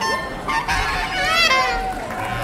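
Free-jazz reed playing: short broken notes, then a squawked note whose pitch bends up and down a little past halfway, settling into a held tone near the end.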